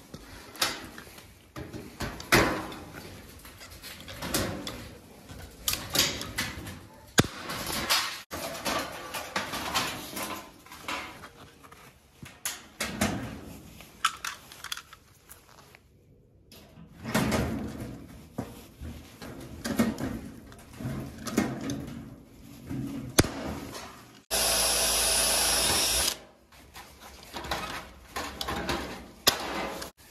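Pop-riveting galvanized sheet steel with a Stanley MR 99 hand riveter: irregular clicks and sharp snaps as the handles are squeezed and the rivet mandrels break. About two-thirds of the way through, a drill runs steadily for about two seconds, drilling a rivet hole, and is the loudest sound.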